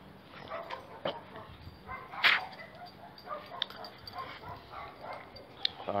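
A dog yipping and whimpering a few times, the loudest yip about two seconds in.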